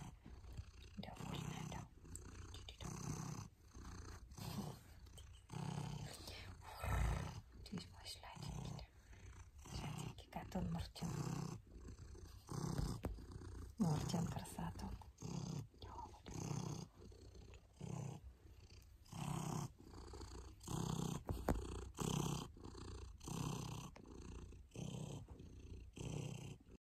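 Domestic cat purring while being stroked on the head and chin, the purr swelling and fading with each breath about once a second.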